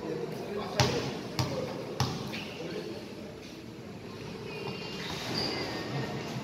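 A basketball bounced three times on the court floor, about two-thirds of a second apart: the free-throw shooter's dribbles before the shot. Crowd voices run underneath.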